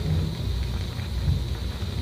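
Steady background hiss with a low hum from an old archival recording, in a pause between spoken phrases.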